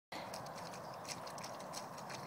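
A dog digging with its paws and nose in wet, muddy turf: short, irregular scraping clicks over a steady hiss.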